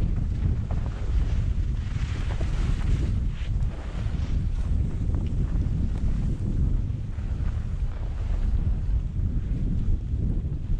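Wind buffeting the camera microphone of a skier moving downhill, a steady, fluttering low rumble, with the hiss of skis sliding over snow that swells a couple of seconds in.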